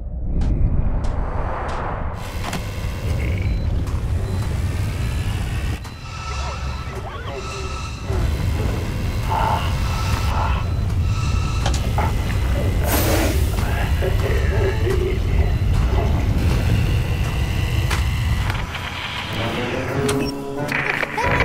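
Animated-film soundtrack: dramatic music over a continuous deep volcanic rumble, with booming effect hits and a sweeping whoosh about thirteen seconds in.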